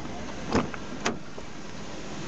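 Car door being opened: two short clicks, the handle pulled and the latch releasing, over a steady hiss.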